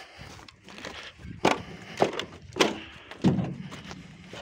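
Footsteps of a person walking on a path of gravel and earth, four steps about half a second apart.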